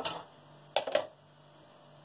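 A metal spoon stirring syrup in a stainless steel saucepan: a click at the start and a couple of short knocks of the spoon against the pot just before the one-second mark, with quiet in between.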